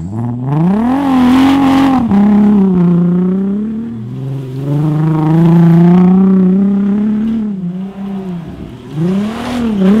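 Mk4 VW R32's VR6 engine revving hard under load as the lifted car accelerates across grass with its wheels spinning and throwing up turf. The revs climb quickly, dip twice in the first few seconds, hold high for a couple of seconds, fall away and rise again near the end.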